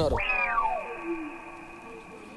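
A single cat-like meow, one long cry that slides down in pitch over about a second, fading to faint steady tones.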